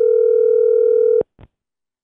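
Telephone ringback tone of an outgoing call on the line: one steady ring that stops about a second in, followed by a short click as the line connects.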